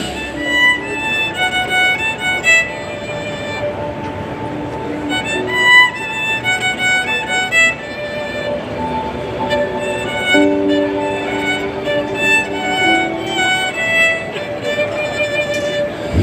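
Violin playing a melody of short, quick notes, with a couple of longer held notes sounding together about ten seconds in.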